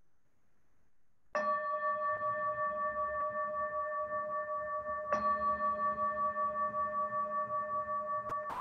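A singing bowl struck twice, about a second in and again about four seconds later, each strike ringing on with a steady, wavering tone. It sounds the close of a guided meditation.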